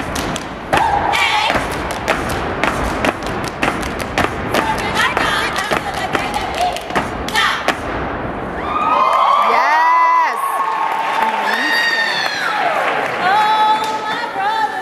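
A step team stomping and clapping through a step routine, with voices calling out over the quick, irregular impacts. About eight seconds in the stomping mostly stops and the women sing a chant together.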